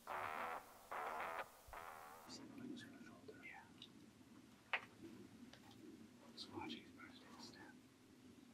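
Short repeated musical phrases for about two seconds, then quiet whispering inside a hunting blind while a compound bow is drawn, with a single sharp click near the middle.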